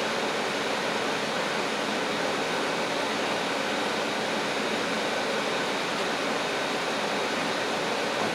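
Steady, even background hiss with no distinct events in it.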